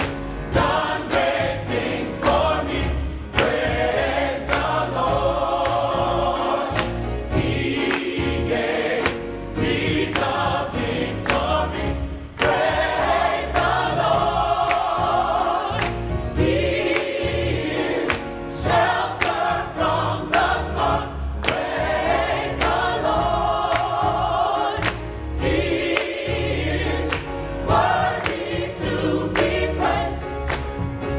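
Gospel choir singing in full voice, backed by piano and a drum kit keeping a steady beat.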